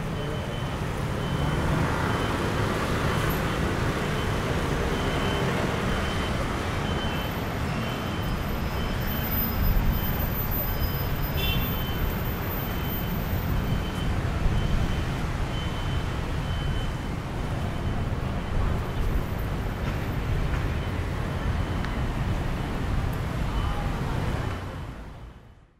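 Steady city road traffic: cars and buses going by on a multi-lane road, a continuous low rumble. Through it runs a faint high beep, repeated evenly for most of the time.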